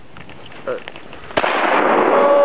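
A single Remington 870 12-gauge shotgun shot fired with buckshot, about one and a half seconds in, followed by a loud rolling echo.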